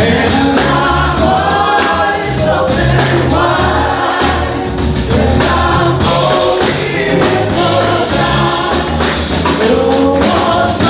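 Live gospel group singing together in harmony, with piano and drums keeping a steady beat.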